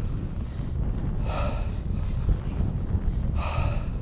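Wind buffeting the microphone, a steady low rumble, with two breathy exhales about two seconds apart, one in the middle and one near the end.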